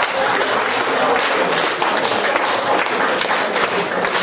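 Audience applause: many hands clapping at once, steady and loud.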